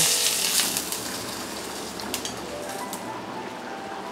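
Hot oil tempering of mustard seeds, dal and curry leaves poured onto boiled black chickpeas, sizzling for about a second and then fading to a faint hiss with a couple of light clicks.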